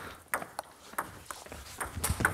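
Table tennis ball striking rackets and bouncing on the table in a short serve-and-receive rally: a quick run of sharp ticks, about a quarter to half a second apart.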